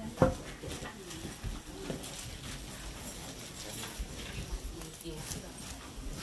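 Low, indistinct murmur of several people's voices in a room, with a single sharp knock just after the start, the loudest sound, and scattered light clicks and taps after it.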